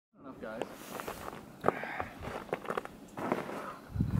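Footsteps, several sharp steps, with brief scattered bits of speech in between.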